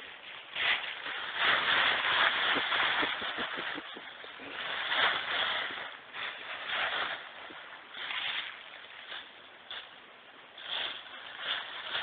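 Dry fallen leaves rustling and crunching in irregular bursts as a puppy digs and pounces in a leaf pile and a hand stirs them, loudest in the first few seconds.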